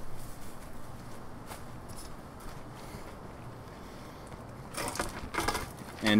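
Faint steady outdoor background, then from near the end a run of close rustling and knocking handling noises as a freshly cut, sappy section of banana stem is brought right up to the microphone.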